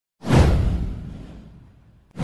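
Whoosh sound effect from an animated intro. It swells in suddenly with a deep rumble underneath, then fades away over about a second and a half.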